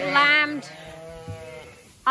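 Ewes bleating in lambing pens: a loud, wavering bleat in the first half second, then a longer, lower and quieter bleat lasting about a second.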